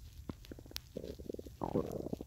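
Close handling noise on the microphone: scattered small clicks and rubbing, with a rapid run of ticks about a second in and a louder rub near the end.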